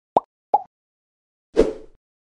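Cartoon-style pop sound effects for an animated logo intro: two quick plops, each sweeping up in pitch, near the start and about half a second later. About a second and a half in comes a louder, noisier pop that fades out quickly.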